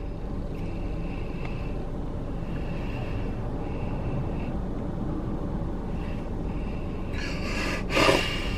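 Steady low rumble of a car heard from inside its cabin, with a short louder rush of noise just before the end.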